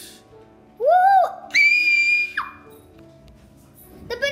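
A child's voice making sound effects over faint background music: a short note that rises and falls, then a high, held squeal that drops away about halfway through.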